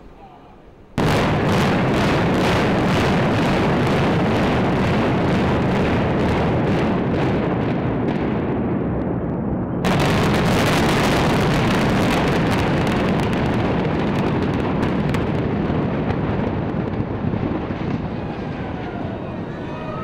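Implosion of a nine-story post-tensioned concrete parking garage. Explosive demolition charges start going off suddenly about a second in, a dense string of sharp cracks. A fresh, louder burst of blasts comes about halfway through, followed by the rumble of the structure coming down, slowly fading toward the end.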